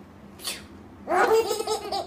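Babies laughing: a run of high-pitched, pulsing giggles that starts about a second in, after a short breathy hiss about half a second in.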